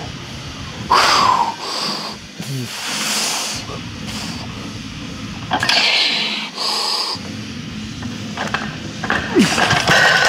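Sharp, hissing breaths of a powerlifter bracing for a heavy deadlift, several in a row, followed near the end by a few knocks of the loaded barbell.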